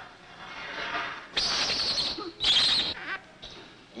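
Infant rhesus monkey crying out shrilly: two loud cries, about a second and a half in and again a second later.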